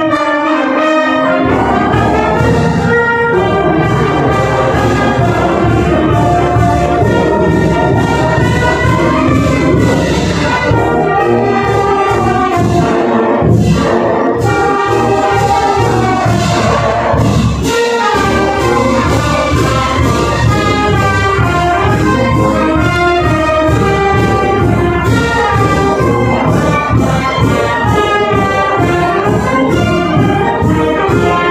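Marching brass band playing a tune: trumpets, trombones and sousaphones over a steady beat of drums and crashing cymbals.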